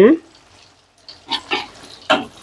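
Egg-battered milkfish frying in oil in a wok, a low sizzle, with a few short scrapes of a metal spatula past the middle as the fish is turned.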